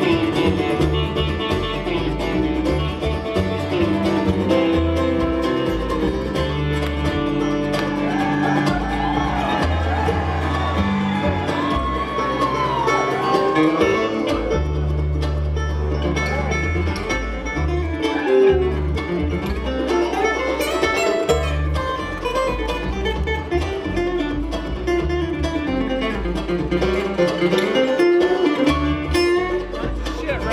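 Live bluegrass band playing an instrumental passage on acoustic guitar, five-string banjo, dobro and upright bass, with sliding notes in the middle.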